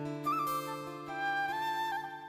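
Background music: a flute melody with sliding notes over steady held low notes.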